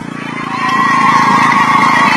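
A motor vehicle engine running steadily, swelling over the first half second.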